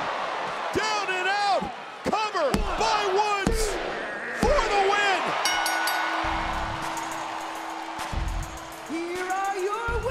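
Wrestlers' bodies slamming onto the ring canvas, deep thuds about a second apart with two longer rumbling impacts later on, under excited voices rising and falling in pitch and a held tone.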